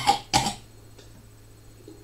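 A young man coughing: two short coughs right at the start, followed by only a low steady hum.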